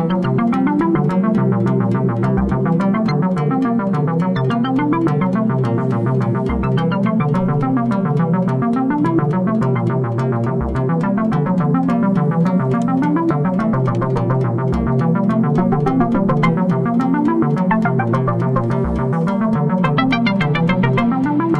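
Eurorack modular synthesizer voices playing three interleaved sequenced lines from a polyphonic step sequencer: rapid short synth notes running up and down in repeating patterns over a fast steady ticking, with a deep low note about every four seconds.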